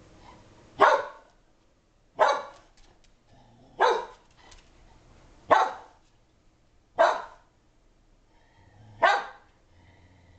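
Shetland sheepdog giving six single sharp barks, spaced about a second and a half apart, herding barks aimed at a logo bouncing across a TV screen.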